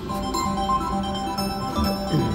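Slot machine game music: a tune of short notes over a steady low note.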